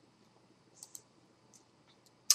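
Near silence broken by two faint, quick clicks a little under a second in, and a couple of fainter ticks after them, from a computer being clicked to advance a PowerPoint slide.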